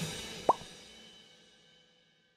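The tail of a rock intro tune dying away, with one short rising pop sound effect about half a second in.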